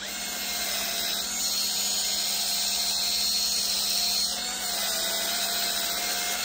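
Cordless electric spin scrubber switched on, its small motor whining steadily as the sponge head spins. The whine wavers slightly about four seconds in.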